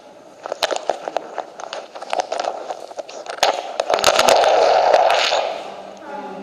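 Irregular sharp clicks and crackles, building into a louder, steady scraping noise about four seconds in that fades away near the end.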